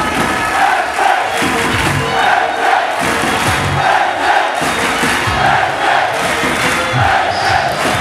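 A large crowd of football supporters chanting in unison in a repeating rhythm, with deep thumps keeping time.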